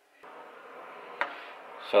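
Small metal carburettor parts handled at a workbench: a steady rubbing rustle that begins just after the start, with one sharp click a little over a second in.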